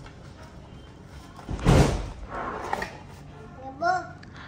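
Cardboard shoebox and tissue paper rustling as a child pulls a sneaker out, with a sudden thump about halfway through. A child's short rising exclamation near the end.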